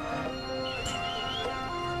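Music of sustained held tones, with a single sharp knock about a second in: a hammer chipping at the concrete of the Berlin Wall.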